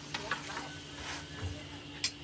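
Flatbread being worked on a long-handled peel in a stone-floored bread oven: a few sharp scrapes and clicks over a steady low hum.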